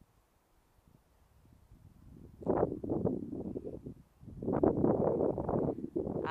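Wind blowing on the microphone in two gusts: the first about two and a half seconds in, and a louder one from about four seconds in, after a quiet start.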